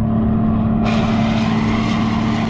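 Tractor's diesel engine running steadily at constant speed, a continuous low drone with an even tone.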